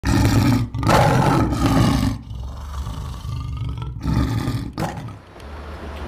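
A lion roaring: one long roar over the first two seconds, then a second, shorter roar about four seconds in.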